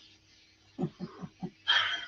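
A man chuckling quietly in about five short laughs, followed by a breathy exhale.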